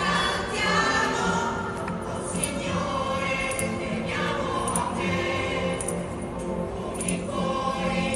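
A choir singing sustained, gliding melodic lines over a steady low drone.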